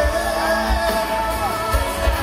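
Live band music with a singer holding a long, wavering note over a steady bass beat, heard from the audience through the venue's large PA speakers.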